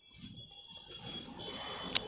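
Quiet background between spoken phrases: faint room noise with a thin, steady high-pitched whine that comes in about a second in.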